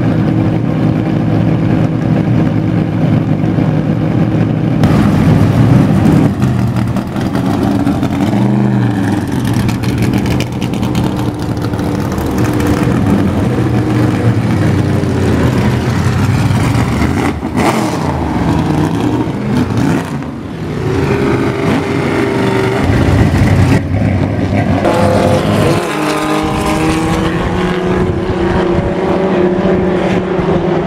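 Race car engines running loudly and continuously, their pitch falling and rising several times as cars pass by.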